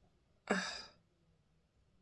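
A man's single short, breathy 'uh' about half a second in.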